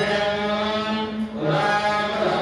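Ritual mantra chanting by voices, with long held notes over a steady low tone.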